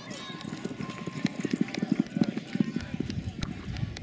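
Hoofbeats of a barrel-racing horse galloping flat out on a sandy dirt arena: a quick, uneven run of dull thuds that is loudest between about one and three seconds in.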